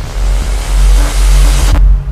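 Logo-animation sound effect: a loud, deep bass rumble with a few held low tones under a bright rushing whoosh, which cuts off sharply near the end.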